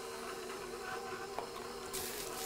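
KitchenAid stand mixer running with a steady hum as it finishes mixing biscuit dough, with one small click a little past halfway.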